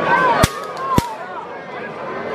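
Two sharp cracks about half a second apart, the horns of two fighting bulls clashing together as they butt heads, with spectators' voices around them.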